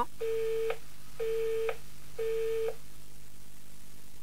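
Telephone busy tone after the caller hangs up: three identical beeps on one steady low tone, each about half a second long and a second apart, marking the end of the call.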